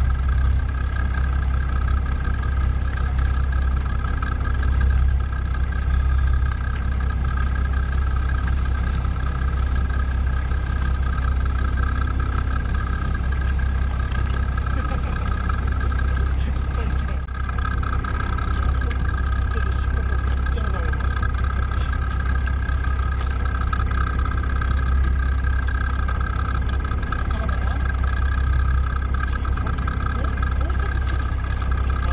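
Fishing boat's engine running steadily at idle: a constant low rumble with a steady higher hum above it.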